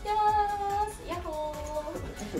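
A high voice singing two long held notes, each with a short slide up into it.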